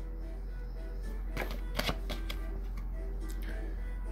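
Soft background music with steady held tones, over which tarot cards are handled, giving a few sharp clicks and snaps, the loudest about a second and a half to two seconds in.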